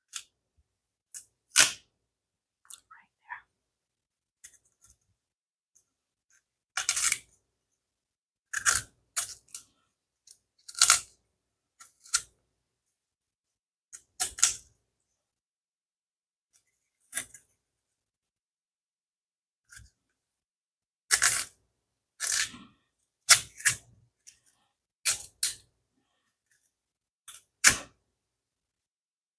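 A kitchen knife cutting and peeling the hard, bark-like skin off a yuca (cassava) root, in short scraping strokes separated by pauses of a second or several seconds.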